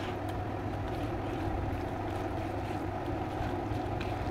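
A steady low hum and hiss, with faint soft squishes of a hand mixing chopped onion, tomato and mashed roasted eggplant in a bowl.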